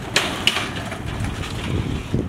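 Loaded shopping carts rolling over parking-lot asphalt, a steady rattle with two sharp knocks near the start.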